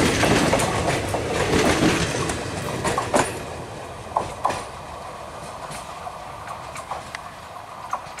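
Indian Railways passenger coaches running past close by, wheels rumbling and clacking over the rail joints. About three seconds in, the last coach goes by and the noise fades as the train pulls away, leaving sparse clicks from the wheels.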